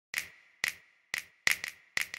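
Sharp percussive snaps of a hip-hop beat, about two a second and coming closer together near the end, each with a short ringing tail.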